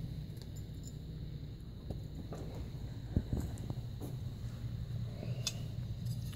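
Faint scattered clicks and light taps of small metal carburetor parts being handled on a workbench, over a steady low hum.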